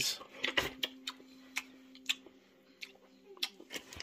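Scattered small clicks and taps of hot dogs being handled and laid into a metal baking pan of lasagna layers, over a faint steady hum.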